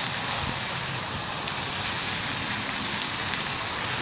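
Food sizzling in a frying pan over a wood campfire: a steady hiss.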